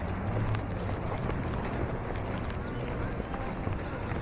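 City street ambience heard while walking: a steady low traffic rumble with footsteps and indistinct voices of people nearby.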